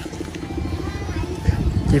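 A low engine-like rumble pulsing fast and evenly, with faint voices in the background.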